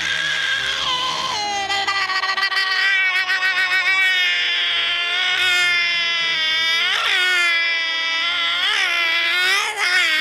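One long, exaggerated high-pitched comic wail, a voice crying in falsetto. Its pitch wobbles, drops about a second in, and breaks upward in sharp sobs around seven and nine seconds in.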